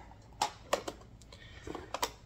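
A few sharp plastic clicks as cassette cases are handled on a table, about half a second in, again soon after, and once more near the end.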